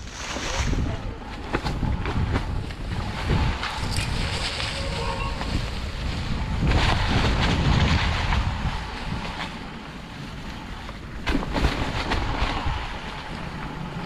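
Wind buffeting the camera microphone over the rolling noise of mountain bike tyres on a dry, leaf-covered dirt trail, swelling and fading with speed, with scattered sharp clicks and knocks from the bike rattling over bumps.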